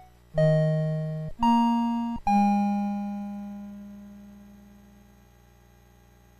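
Short electronic logo jingle: three synthesizer notes, a low one, a higher one, then a middle one that is held and fades away over about three seconds.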